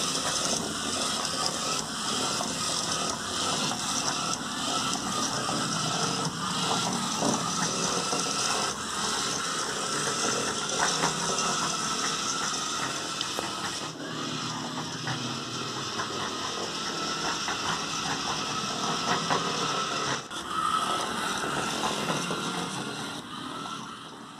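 Small plastic DC gear motors of a two-wheeled robot car running, a steady mechanical whirring of motors and gears that dips briefly twice, about 14 s and 20 s in.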